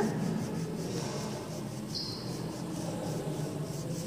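Red wax crayon rubbing on paper in light, slanted shading strokes: a soft, repeated scratching.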